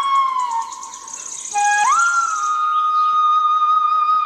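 Indian bamboo flute playing a slow meditative melody. A held note fades into a short lull, where a faint high fluttering sound shows. A new note then slides up in pitch and is held steadily.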